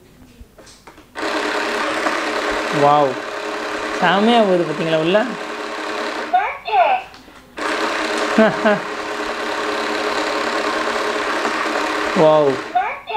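Small electric motor in a toy ATM piggy bank's note slot whirring steadily as it draws in a banknote, running about five seconds, stopping, then running again for the next note. A voice sounds briefly over it a few times.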